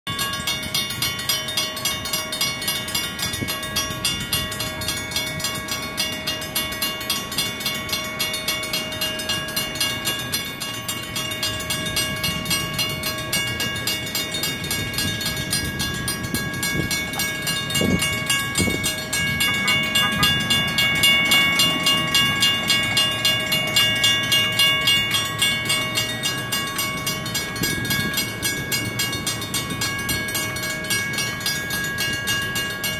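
Federal Signal railroad crossing bells ringing in rapid, steady strikes while the crossing is active, the mechanical bell included. Road traffic passes about halfway through.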